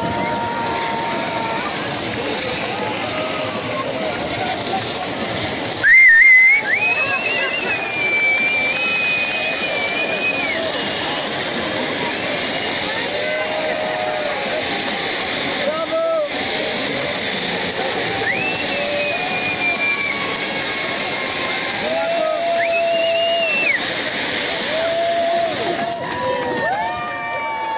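Ground fountain firework hissing steadily as it sprays sparks, with onlookers' excited voices and several long, high-pitched squeals over it. A short loud burst comes about six seconds in.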